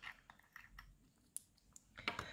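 Near silence with a few faint, scattered clicks of small plastic glitter jars being handled and set down on a table, the sharpest about a second and a half in.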